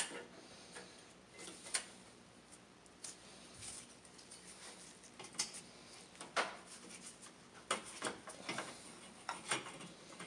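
Faint, scattered clicks and light knocks of a car's metal hood latch and its release cable being handled as the cable end is worked through a hole in the radiator support.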